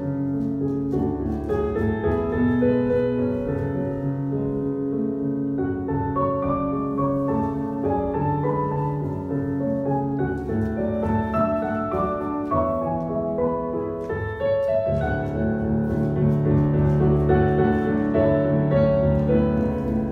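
Recorded piano music playing, with held notes and chords changing every second or two.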